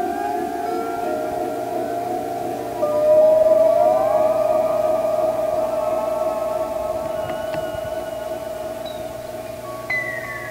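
Electronic music played on a synthesizer: long sustained tones that slowly glide in pitch over a pulsing lower layer, with a louder note coming in about three seconds in and held steady to the end.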